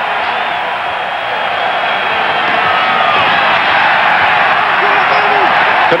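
Stadium crowd noise from many voices, cheering and growing slightly louder as the play goes on.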